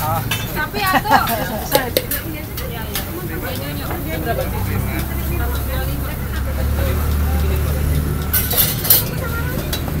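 Clinks and scrapes of metal utensils on the thick pancake pans while martabak manis is being topped, with a brief run of scraping near the end. Under it a low steady rumble swells from about four seconds in.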